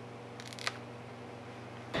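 A low steady hum with a couple of small clicks about half a second in, light handling noise from work at the bench.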